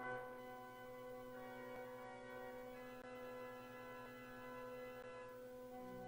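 Organ playing soft, held chords that begin suddenly and change a few times.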